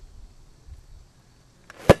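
Golf club striking a small orange ball off gravel: a single sharp, loud hit near the end.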